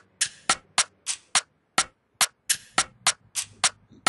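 Programmed percussion loop playing back from the FL Studio step sequencer at about 105 BPM: short, sharp, bright hits in a syncopated Afrobeats-style pattern, about three or four a second with occasional gaps.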